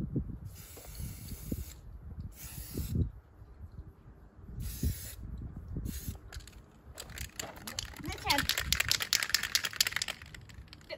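Aerosol spray-paint can sprayed in four hissing bursts, the first long and the rest short, then shaken hard from about seven seconds in, its mixing ball rattling rapidly inside.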